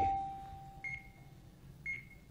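Game-show electronic signals: a steady electronic tone that fades out over about a second and a half, marking a correct answer, with a short high beep about once a second from the countdown clock.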